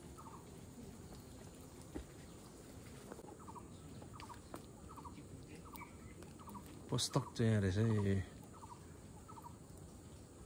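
A faint short call repeats about twice a second. About seven seconds in comes a sharp knock, then a loud, deep, wavering vocal sound lasting about a second.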